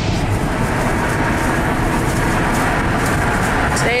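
Steady road and wind noise inside a van driving at highway speed: an even rumble with a faint engine hum.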